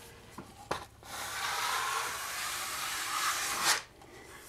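A long Level5 drywall skimming blade is drawn across wet joint compound in one pass, a steady scraping rub about three seconds long. It starts about a second in and cuts off sharply near the end. A light tick comes just before it.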